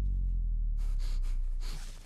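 A low, steady drone, with several quick breaths or gasps from a person starting about a second in.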